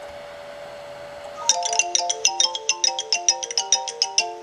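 ImgBurn's completion jingle playing from the computer when a disc burn has verified successfully: a funky little run of quick, bright plinking notes that starts about a second and a half in. A faint steady tone sits underneath.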